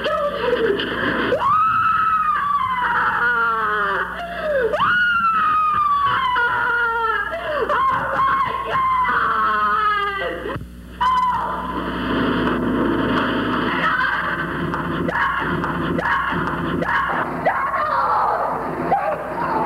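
A person screaming: a run of long, high screams, each rising briefly and then falling in pitch, for about the first ten seconds, followed by shorter broken cries. A steady hum runs underneath.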